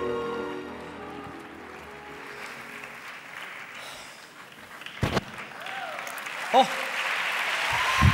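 Orchestral music trails off in the first second, then after a sharp knock about five seconds in, an audience applause builds and carries on, with a man's "Oh!" near the end.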